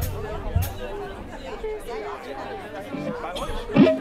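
Audience chatter between songs at an open-air concert, with two low thumps from the band's instruments in the first second and a louder hit with a short note near the end.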